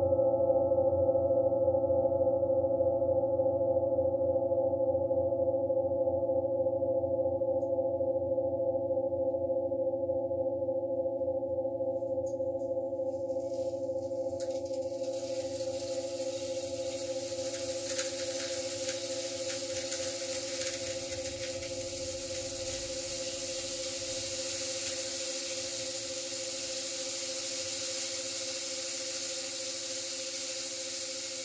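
Large metal singing bowls ringing on after being played, a steady chord of tones that slowly fades. About halfway through, a steady high hiss comes in beneath the ringing.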